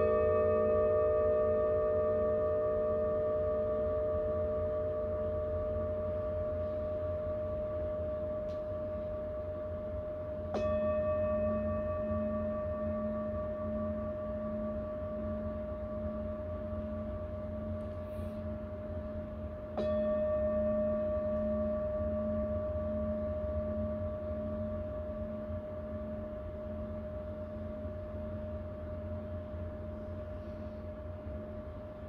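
Tibetan singing bowls struck with a mallet three times, about ten seconds apart, each strike ringing on long and slowly fading, with a slow wavering pulse in the low tone.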